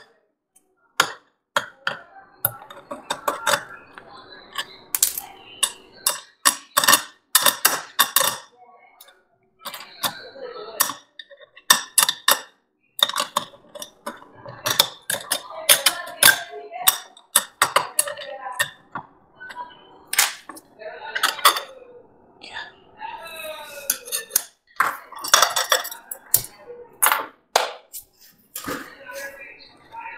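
Irregular small metal clicks, clinks and taps from a desktop hard drive being taken apart by hand: a small screwdriver working on the drive's screws and parts, and small metal pieces knocking against the drive and the table.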